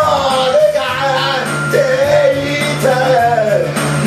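A man singing loudly into a karaoke microphone over a backing track with a steady bass line.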